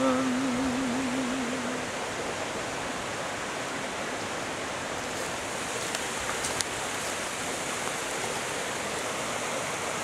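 River water rushing over rocks through shallow rapids, a steady rushing noise. For the first two seconds a man's sung low note is held with vibrato before it fades out.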